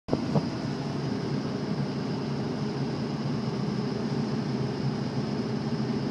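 Steady road and engine noise of a moving Ford F-250 pickup heard from inside the cab, with a couple of light clicks near the start.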